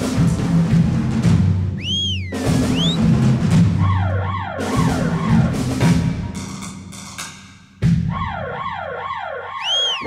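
Concert band music: a low brass and timpani ostinato, broken by siren-like glides that rise and fall about three times a second. The music thins out and fades near the middle, then comes back in suddenly and loud about eight seconds in.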